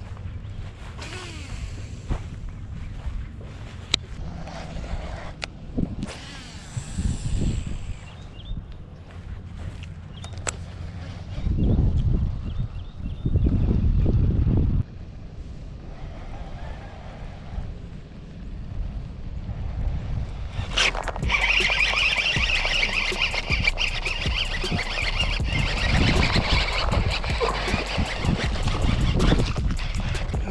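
Wind and handling noise on an outdoor microphone, with loud low rumbles in gusts around the middle. About two-thirds of the way through, background music with a steady beat comes in.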